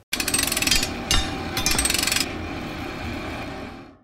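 Two bursts of fast rattling impacts, the first about a second long and the second shorter, followed by a ringing tail that fades out near the end.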